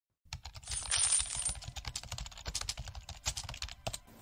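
Fast, irregular clicking of computer-keyboard typing, a quick run of key presses starting about a quarter second in and stopping just before the end.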